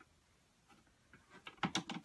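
Sewing tools and fabric being handled on a table: a quick run of light clicks that grows thicker and louder near the end.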